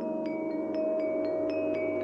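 Film score music: high, bell-like tuned percussion notes struck about four a second, ringing over sustained held tones.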